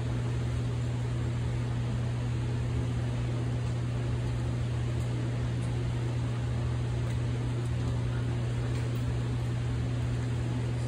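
Steady low hum and airy rush of a laboratory fume hood's exhaust fan running, unchanging throughout.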